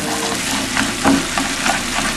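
Floured stockfish pieces sizzling in hot oil in a frying pan as they are seared to seal them, with a few short knocks and scrapes as the pan is moved to keep them from sticking.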